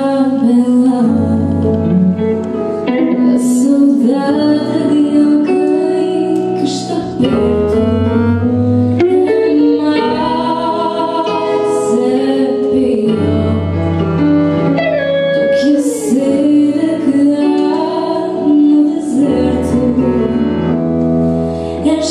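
A woman singing a melody into a microphone, backed by a live band of drums, electric bass, keyboard and electric guitar, with a cymbal struck every few seconds.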